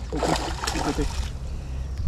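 A hooked pike splashing and thrashing at the water's surface on the line, mostly in the first second, under a quiet voice.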